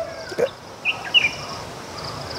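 A bird chirping twice, two short high calls about a second in.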